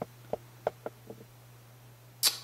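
A few faint, short clicks, about six in the first second and a half, over a steady low hum.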